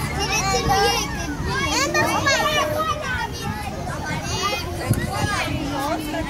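Young children's high voices chattering and calling out as they play, with one sharp click about five seconds in.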